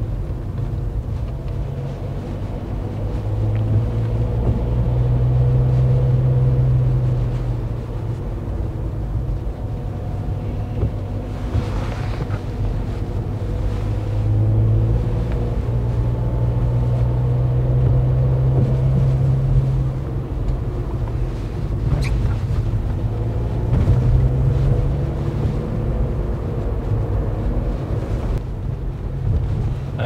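Steady engine and road noise heard from inside a vehicle's cabin as it drives on a wet road. The engine note swells and changes pitch several times as it pulls away and accelerates.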